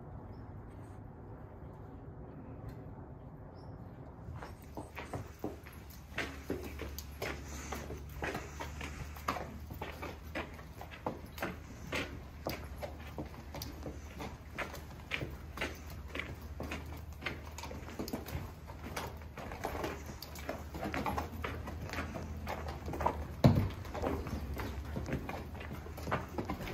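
A horse's hooves clopping on a barn aisle floor as it is led at a walk, about two steps a second, starting a few seconds in, with one louder knock near the end. A steady low hum runs underneath.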